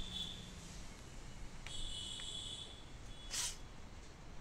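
A quiet pause with low hiss. A faint high-pitched tone runs briefly about two seconds in, and a short sniff through the nose comes near the end.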